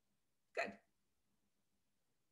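A woman says the single word "good", short and falling in pitch, about half a second in; otherwise near silence.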